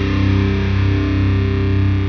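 Deathcore music: a heavily distorted electric guitar holds a steady, sustained low chord with no drums, sounding muffled with its treble filtered off.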